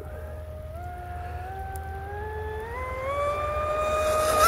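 Fast electric RC speedboat under throttle: the brushless motor's whine climbs in pitch in steps and grows louder as the boat accelerates across the water.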